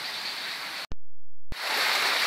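Rushing creek water over rocks, broken about a second in by a half-second gap that holds only a low steady hum, with a click at either end; the water comes back louder after it.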